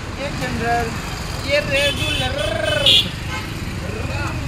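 Voices and chatter around a busy street-food cart over a steady low rumble of street traffic, with a brief sharp high sound about three seconds in.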